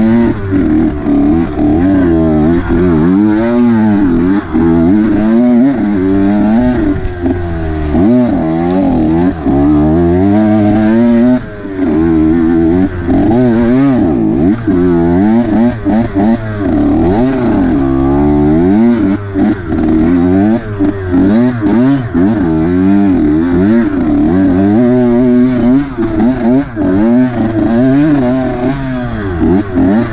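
Dirt bike engine revving up and down over and over, its pitch rising and falling every second or two as the throttle is worked at low speed over rough ground.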